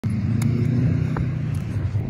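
A motor vehicle's engine running nearby: a steady low hum that eases slightly near the end, with a couple of light clicks.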